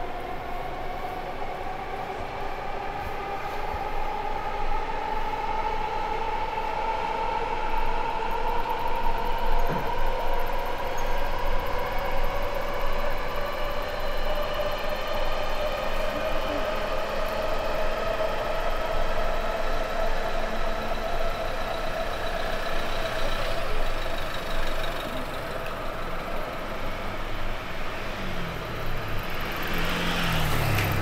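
Electric train's motors whining, a stack of tones climbing slowly in pitch for some twenty seconds as it accelerates, then fading. City street traffic runs underneath.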